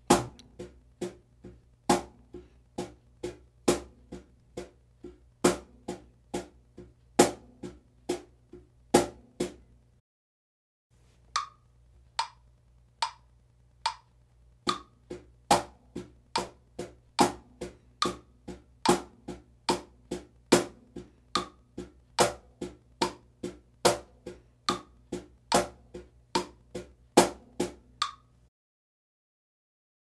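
Cajón struck by hand near its top edge for the high tone: steady eighth notes at 72 bpm, with accents on beats two and four, over a metronome click. The playing breaks off about ten seconds in, the metronome ticks on alone for a few beats, then the accented eighth-note groove resumes and stops a little before the end.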